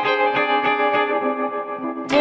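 Instrumental song intro on guitar: single notes picked in a steady pattern, about four a second, thinning out near the end.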